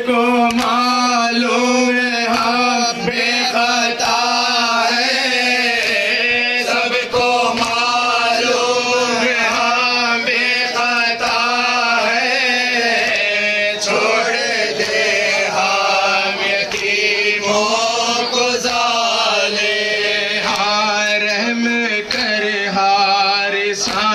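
Male voices chanting a noha, a Shia mourning lament, led by a reciter on a microphone, in continuous rising and falling phrases.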